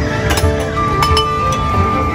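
Stacked stainless-steel tumblers clinking as a thrown ball knocks into them, over loud background music. There are sharp clinks about a third of a second in and again about a second in; the second rings on for most of a second.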